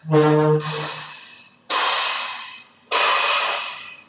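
A louvred door being pushed open: a low, steady creak for about the first second, then two harsh scraping rushes a little over a second apart.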